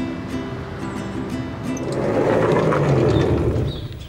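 Nylon-string acoustic guitar being picked, single notes ringing over one another. About halfway through, a louder rushing noise swells up over the guitar and fades away near the end.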